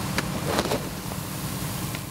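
Steady roar of a wood-frame house burning fully, with a couple of sharp cracks in the first second.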